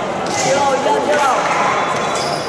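Several voices calling out and chattering at once in a large gymnasium hall, steady throughout.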